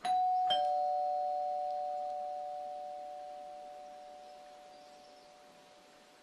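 Two-tone doorbell chime: a higher ding and, about half a second later, a lower dong, both ringing on and slowly fading away.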